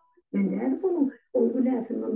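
A person talking in two phrases, from a video being played back on the computer.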